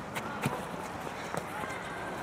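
Faint voices of football players during open play, with several short sharp knocks spread through it.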